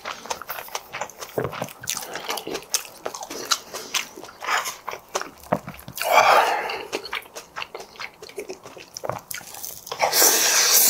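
Close-miked chewing of a mouthful of spring-greens bibimbap: a rapid, uneven run of wet mouth clicks and crunches. A louder noisy burst comes just after six seconds.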